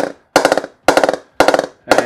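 Wooden mallet tapping the face of a willow cricket bat to test its press, about two strikes a second, four in all, each ringing briefly. The bat is not yet oiled or knocked in.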